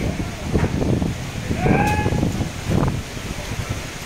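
Voices calling out, including one drawn-out call about two seconds in, over a steady rush of wind from an approaching storm.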